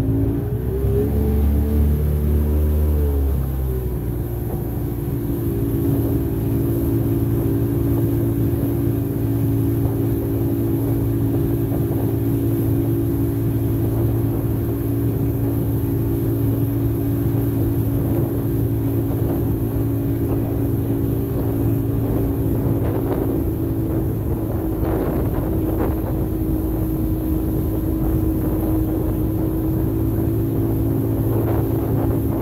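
Sea Ray Sea Rayder F16 jet boat's engine revs up, drops back about three seconds in, then runs steady at one pitch, holding the boat on a slow plane of about 12 mph with its Lenco trim tabs set halfway.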